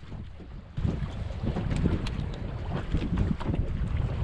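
Wind buffeting the microphone on a small boat rocking in waves: a steady low rumble with water washing against the hull, starting suddenly under a second in.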